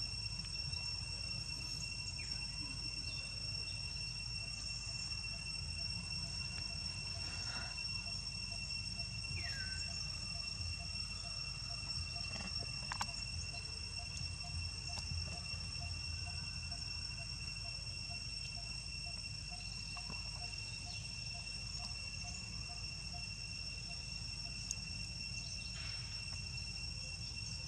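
Steady, high-pitched drone of insects in tropical forest, unbroken throughout, with a faint regular pulsing call through the middle and a few faint chirps over a low rumble.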